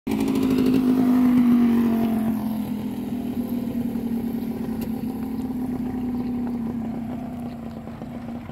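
Small motorcycle engine running steadily, then easing off and getting gradually quieter as the bike slows down.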